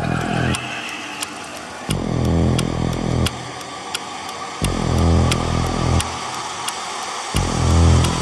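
Industrial drum-and-bass intro: a deep, distorted, pulsing synth bass note about every three seconds over steady ticking percussion.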